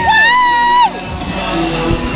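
Women's voices letting out a long, drawn-out whoop that cuts off about a second in, then music.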